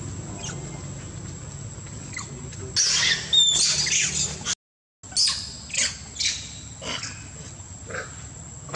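Monkeys screaming during a fight: loud shrill shrieks break out about three seconds in, then continue as a string of short screams roughly twice a second after a brief dead gap. A steady high insect whine runs underneath.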